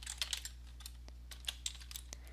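Computer keyboard being typed on: a few scattered keystrokes, in a small cluster early on and a couple more past the middle, over a low steady hum.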